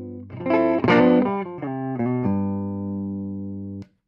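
Gretsch 6122 Country Gentleman electric guitar played through a 1964 Fender Concert blackface amp with dual 6L6 output valves and four 10-inch Oxford speakers. A held chord gives way, about half a second in, to a quick loud flurry of notes, then chords are left to ring until the sound stops abruptly near the end.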